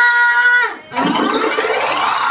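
A woman's voice through a microphone holds a long, high drawn-out call that fades away just under a second in. About a second in, loud dance music starts.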